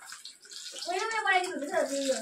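Chicken frying in hot oil in a wok, a steady sizzle. About halfway through, a high voice cuts in with a long call that rises and falls in pitch.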